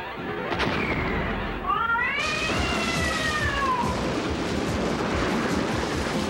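Cartoon soundtrack: a drawn-out cat-like yowl that rises and then slowly falls, over background music. A loud rushing hiss comes in about two seconds in and carries on.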